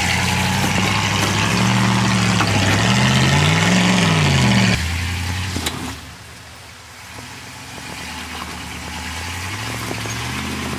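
Dodge pickup's engine revving up and down under load while crawling over rocks, with a rushing noise over it. The sound cuts off suddenly about five seconds in, drops quieter, then the engine builds back up near the end.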